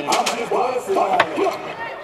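Two sharp knocks about a second apart, a kick scooter's wheels and deck hitting concrete, under a man's voice.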